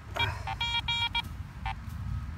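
Metal-detecting gear beeping while a target is pinpointed in a freshly dug hole: a quick run of about five short electronic beeps, then one more near the end.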